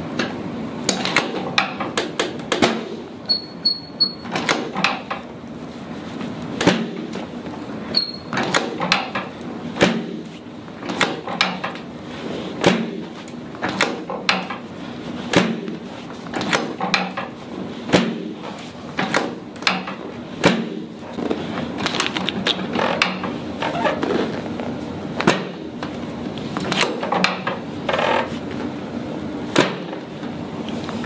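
Rapid sharp knocks and thuds, about one or two a second, from a chiropractor's hands striking and working over the patient's low back and pelvis on a padded adjusting table.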